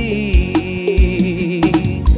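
Arrocha band music with a steady drum beat under sustained melodic lines.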